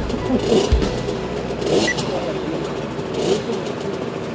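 Motocross bike engines running and revving in the distance, with wavering pitch and a few short bursts of hiss.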